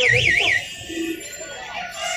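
An electronic warbling alarm tone, sweeping up and down about four times a second, cuts off about half a second in. Quieter street-market voices follow.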